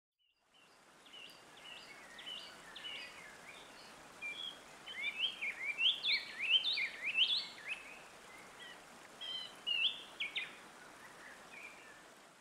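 Birds singing: a run of short chirps and quick rising whistled phrases over a steady outdoor hiss, busiest in the middle.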